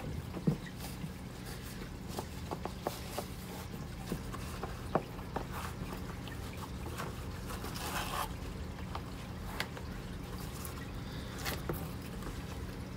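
A new leather baseball glove being pulled apart by hand: scattered crackles, creaks and ticks as the glued palm lining tears away from the glove and its factory palm adhesive lets go. A steady low hum runs underneath.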